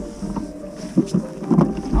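Knocks and rustling of a person climbing into a kayak, clothing and gear brushing against the hull-mounted camera, with a sharp knock about a second in and a second cluster of knocks shortly after.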